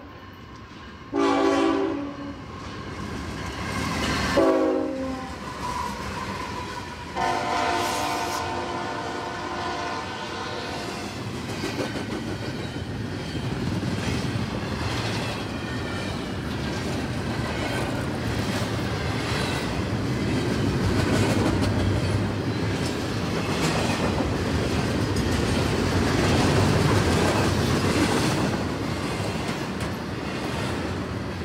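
CSX double-stack intermodal freight train at a road crossing: the locomotive's multi-note air horn gives a blast about a second in, a short one around four seconds, then a long blast from about seven to ten seconds. After that the container cars roll past with a steady rumble and the clickety-clack of wheels over rail joints.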